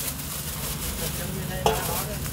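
Thin plastic bag crinkling and rustling close up as chopped roast meat is bagged, with one short sharp knock near the end.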